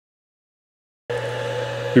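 Silence for about the first second, then a steady machine hum sets in, like a motor or fan running, and continues unchanged. A man's voice starts right at the end.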